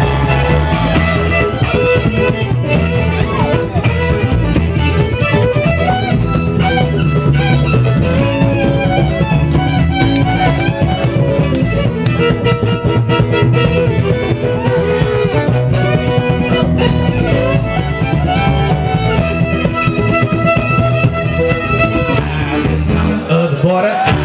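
Live acoustic string band playing an instrumental passage: a fiddle carries the melody over an upright bass and a strummed ukulele.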